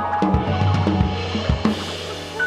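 Instrumental jazz ensemble playing: sustained pitched chord tones over a steady low bass note, with a few drum-kit hits on bass drum and snare.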